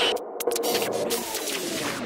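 The tail of a dubstep track just after the full mix with its heavy bass cuts out. A few quick glitchy stutters come in the first half-second, then faint pitched tones.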